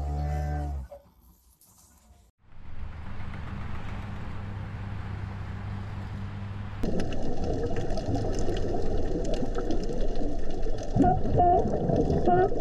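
A cow's deep moo that ends about a second in. Then a steady low hum and noise, which gets louder about seven seconds in. Near the end comes a run of short, rising-and-falling calls.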